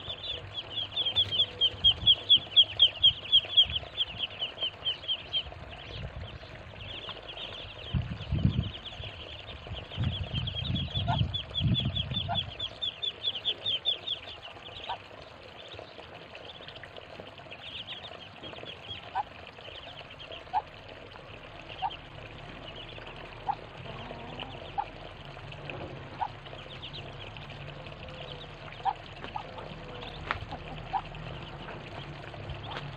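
A flock of ducklings peeping. Fast runs of high peeps come near the start and again midway, then thin out to scattered peeps, with a low rumble underneath midway.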